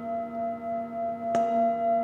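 Metal Tibetan singing bowl resting on a person's knee, ringing on in several steady tones with a wavering, pulsing loudness. It is struck once with a padded mallet about one and a half seconds in.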